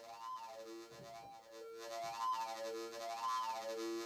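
Hard-synced triangle wave from a Doepfer analogue VCO, a buzzing synth tone whose bright overtones sweep up and down about once a second. The flanging-like sweep is mixed with an unstable, rough component that comes from the sync flank in the triangle wave.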